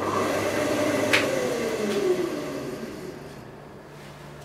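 Homemade disc sander's electric motor winding down after being switched off, its hum falling steadily in pitch and fading as the disc coasts to a stop. A single sharp click about a second in.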